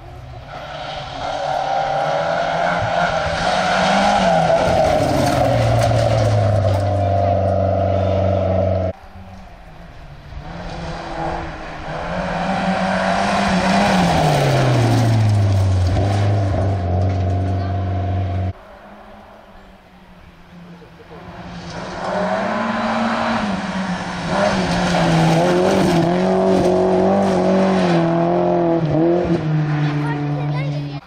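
Three rally cars in turn, each engine at full throttle climbing in pitch and then falling away as it passes, with gravel spraying under the tyres. The sound breaks off abruptly twice, once about a third of the way in and again just past the middle, where one pass is cut straight to the next.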